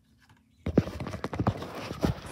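Handling noise from the recording phone or camera: after a brief silence, rustling and rubbing against the microphone with several knocks, as the device is moved and its lens covered.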